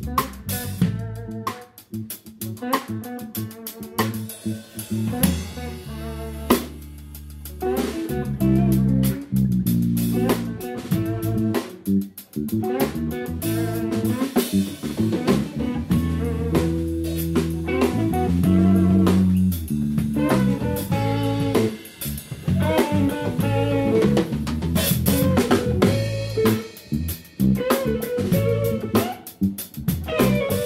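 Live blues band playing an instrumental passage with no singing. A drum kit's snare and rimshot hits run throughout, over held electric bass notes and electric guitar.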